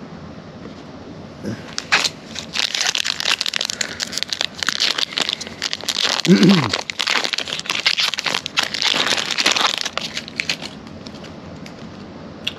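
A foil Donruss Optic basketball card pack being crinkled and torn open by hand: a dense crackling rustle with many sharp crackles, starting a second and a half in and lasting about nine seconds. A short falling vocal sound cuts in about six seconds in.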